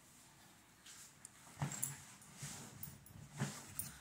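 Two faint, short vocal sounds, about a second and a half and three and a half seconds in.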